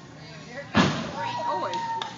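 Young children and adults calling out during parachute play, with a sudden loud thump about three-quarters of a second in, followed by one long high call from a child.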